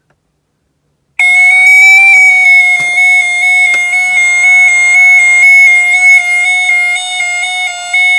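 Gent 34770 fire alarm sounder going off about a second in with a loud, steady alarm tone, set off by the manual call point being operated with its test key in a weekly fire alarm test.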